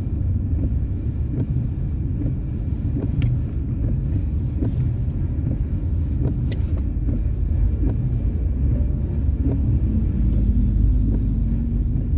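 Steady low rumble of a car driving, heard from inside the cabin: engine and tyre noise on the road, with a couple of faint ticks.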